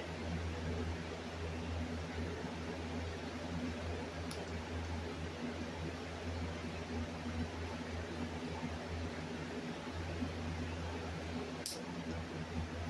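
Room tone: a steady low hum with an even hiss, broken by two faint clicks, one about four seconds in and one near the end.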